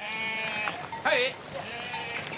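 A flock of sheep bleating: one long call at the start and another about a second in, over the shuffle of the flock.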